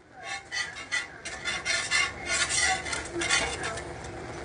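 Metal spatula scraping and tapping on a steel flat-top griddle as tortillas are worked and turned, a quick run of short scrapes and clicks, busiest in the middle.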